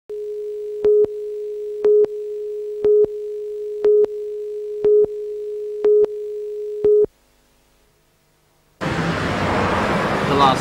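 Broadcast countdown leader: a steady tone with a louder beep every second, seven beeps, that cuts off about seven seconds in. After a short silence, outdoor street noise with traffic begins near the end.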